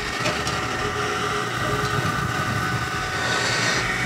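The stepper motors of the xTool D1 diode laser drive its head around the outline of the design in framing mode. They make a steady mechanical whir with a thin whine that holds throughout.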